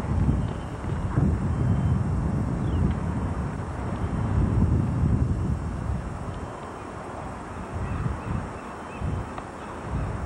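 Wind buffeting a camcorder's built-in microphone: an uneven low rumble, heaviest in the first six seconds and easing after.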